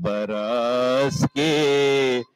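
A man's voice chanting Urdu devotional verse (a manqabat) unaccompanied, in long held notes that bend gently in pitch, with a short break for breath about a second in.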